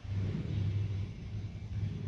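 A low, steady rumble that begins suddenly and holds with slight swells, like a heavy vehicle's engine idling or passing outside.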